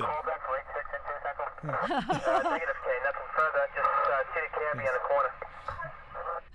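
A voice heard through a narrow, telephone- or radio-like filter, thin with no low end, talking throughout.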